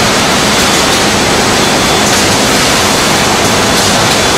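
A loud, steady, even hiss-like noise with no rhythm or distinct tone, holding level throughout.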